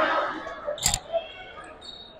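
A basketball bouncing once on a hardwood gym floor, a single sharp thud about a second in, over faint gym background.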